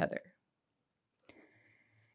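A woman's voice finishing a word at a lectern microphone, then a pause of near silence with a few faint clicks starting a little over a second in.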